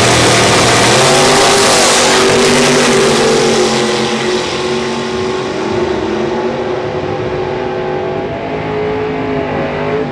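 Two drag-racing cars launching off the starting line at full throttle and running down the strip. The engines climb in pitch over the first second, then hold a high, steady note that slowly fades, and drop in pitch near the end as the cars lift off.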